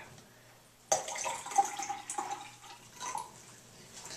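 Dark liquid poured from a cup into a glass tumbler, splashing and gurgling as the glass fills. It starts suddenly about a second in and stops shortly before the end.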